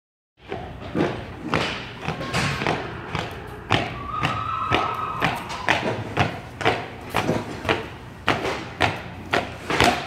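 Clydesdale horse's hooves striking a concrete floor as it is led at a walk: a steady run of heavy thuds, about two a second.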